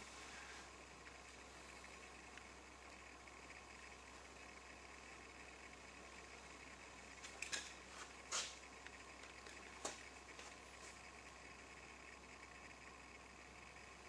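Near silence: shop room tone with a faint steady hum, broken by a few faint short noises around the middle.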